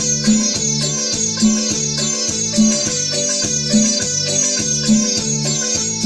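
Yamaha electronic keyboard playing an instrumental kachaka (Paraguayan cumbia) intro over a steady beat, its bass pulsing about twice a second.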